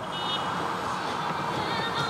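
City street noise with traffic: a steady hiss, with brief high tones about a quarter second in. Music starts to come in near the end.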